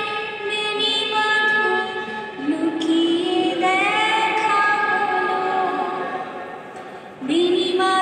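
A woman singing a slow melody solo into a microphone, holding long notes that slide from one pitch to the next, with a short breath pause about seven seconds in.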